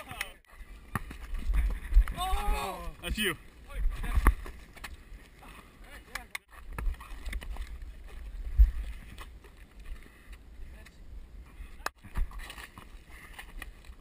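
Low wind and movement rumble on a head-mounted action camera's microphone, broken by several sharp thumps and a brief shout about two to three seconds in.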